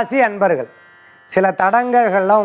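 A man speaking in Tamil, with a brief pause of about half a second near the middle.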